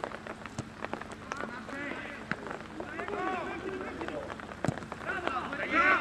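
Footballers shouting to each other across the pitch, over a steady scatter of light irregular ticks, with one sharper knock a little before the end.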